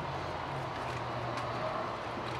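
Steady outdoor background noise with a faint low hum, without any distinct sound standing out.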